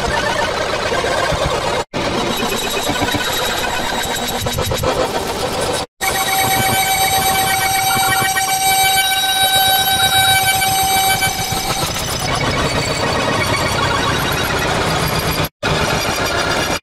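Black MIDI playback through a BASSMIDI software synthesizer with the Z-Doc soundfont. Billions of sampled notes pile up into a harsh, dense cacophony, with a few high held tones in the middle. It cuts out to silence briefly three times, the overloaded synth stalling while its CPU usage runs far past its limit.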